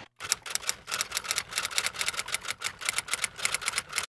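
Typewriter keys clacking in a quick, uneven run of about eight strikes a second, used as a transition sound effect; it cuts off abruptly at the end.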